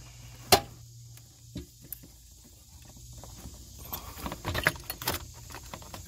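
Handling noise: a single sharp click about half a second in, then scattered light clicks and rattles that come thicker after about four seconds.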